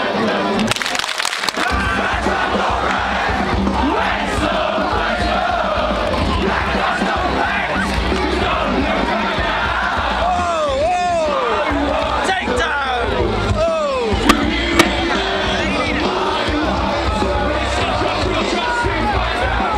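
Live band music loud over the PA with a heavy bass beat that comes in about a second and a half in, heard from inside a moshing crowd. Fans yell and whoop close to the microphone, loudest around the middle, and two sharp knocks on the mic come just before the end.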